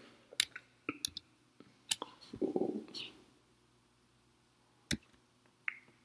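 Scattered single clicks, about eight, as a computer keyboard and mouse are worked, with a brief low murmur about two and a half seconds in.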